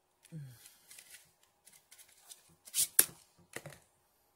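A small paperboard cosmetics box being pulled open and handled, with rustling and crinkling of the card and a sharp crack about three seconds in. A brief hum of a voice comes just after the start.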